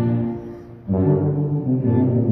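Tuba playing a low melodic line with bowed strings alongside. The first note dies away, and a new phrase enters sharply just before one second in.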